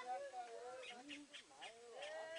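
Faint voices of onlookers talking in the background, with no distinct sound from the cutting.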